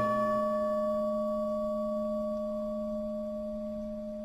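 A Buddhist bowl bell struck once, ringing on with a few clear, steady tones that slowly fade; the highest tone dies away within about a second. The bell marks the pause after one invocation of a Buddha's name in the chanted liturgy.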